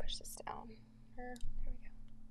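A person's quiet whispered voice: a breathy hissing sound at the start, then a couple of short, soft murmured sounds, too faint to make out as words.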